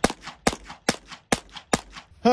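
A .22 Long Rifle rifle firing five rapid shots, a little under half a second apart, each with a short ring after it.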